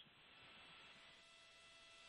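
Near silence: a faint steady hiss with a light hum on the broadcast audio line.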